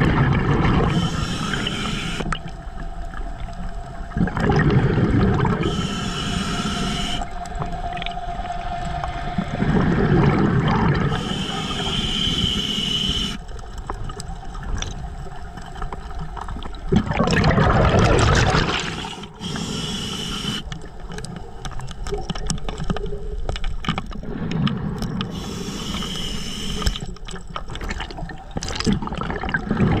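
A diver breathing through a regulator underwater, in a slow repeating cycle about every five to six seconds. Each breath is a hissing inhale with a faint whistle in it, followed by a rumbling gush of exhaled bubbles. The largest bubble burst comes a little past the middle.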